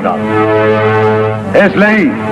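A loud, steady pitched tone held for about a second and a half, with a deeper layer joining in the middle. A man's voice through a microphone comes back in near the end.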